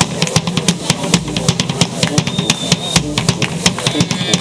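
Fanfare brass band playing: drums beat a quick, steady rhythm of many strikes a second over a low held brass note, with a few higher horn notes.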